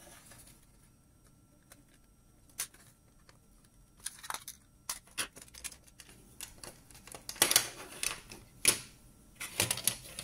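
Plastic clicks and snaps as the white plastic housing of Eachine EV100 FPV goggles is pried apart from its circuit board and handled. Scattered sharp clicks with quiet gaps between them, few at first and more frequent in the second half.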